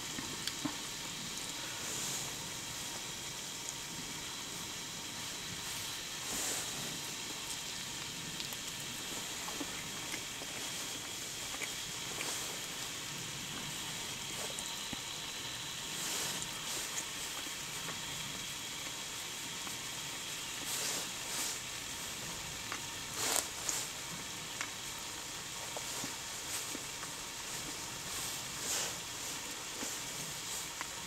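An Esbit solid-fuel tablet burning in a small stove under a pot of water: a quiet, steady hiss with a few short clicks scattered through.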